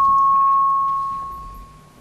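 Microphone feedback through a meeting-room PA system: one steady high ringing tone, loudest at the start and fading away over about two seconds. It comes from a table microphone that is at fault.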